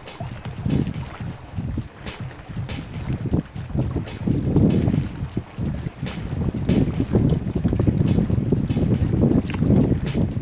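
Wind buffeting the microphone, an uneven low rumble that gusts harder from about halfway through.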